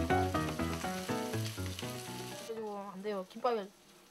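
Dried yellow croaker (gulbi) sizzling as it fries, under background music. The sizzle cuts off suddenly about two and a half seconds in.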